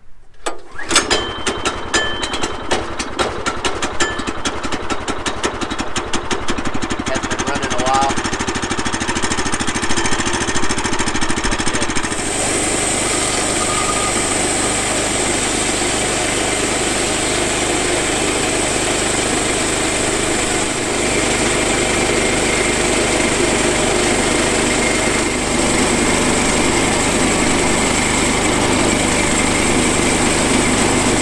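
The small gasoline engine of a Woodland Mills HM122 portable bandsaw mill catches about a second in and runs with an even firing beat. About 12 seconds in it steps up to a steady full-throttle run as the band blade is driven into an eastern red cedar log to saw a slab.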